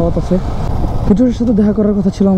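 A person talking over the steady low rumble of wind and road noise from a motorcycle being ridden. The voice drops out for a moment and starts again about a second in.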